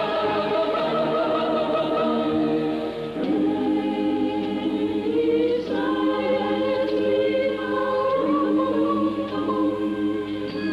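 A choir singing slow, sustained chords that change about every two and a half seconds.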